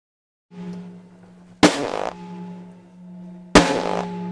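Drum kit struck twice, about two seconds apart, with sharp crashing hits, and between them a low buzzing drone that starts about half a second in and sounds a whole lot like farting noises.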